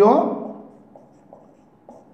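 Marker writing on a whiteboard, a few faint strokes, after a man's spoken word ends in the first half second.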